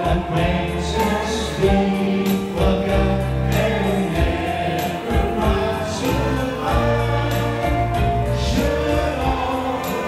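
Live band music with a group of singers singing together into microphones, over sustained bass notes and steady percussion.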